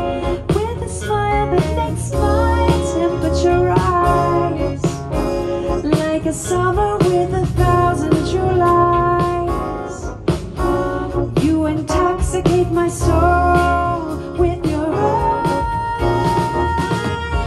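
Symphony orchestra playing a jazz-standard arrangement live, with a singer's voice holding long, sliding notes over it.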